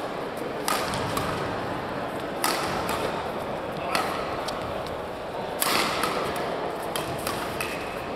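Badminton rackets hitting a shuttlecock back and forth in a doubles rally: four sharp hits roughly one and a half seconds apart, with lighter taps between them, against a steady hum of voices in a large hall.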